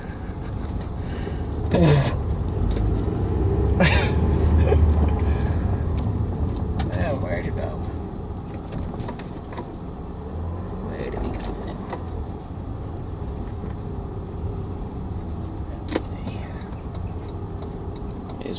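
Car cabin with the engine and tyres giving a steady low rumble as the car drives off, swelling for a few seconds early on as it pulls away, then settling. A few sharp clicks or knocks are heard over it.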